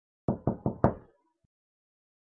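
Four quick knocks on a door, about a fifth of a second apart, the last one the loudest.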